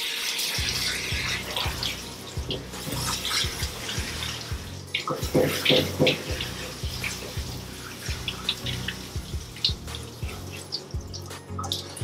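Water spraying from a hand-held hose nozzle, spattering onto a wet cat's coat and into a stainless steel grooming tub as the shampoo is rinsed out, with background music underneath.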